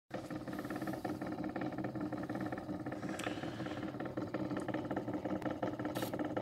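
HMV 103 wind-up gramophone turning a 78 rpm shellac record: a steady mechanical hum from the running turntable, with scattered small clicks.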